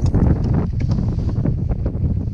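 Strong wind buffeting the microphone: a loud, low, steady rumble with small crackles through it.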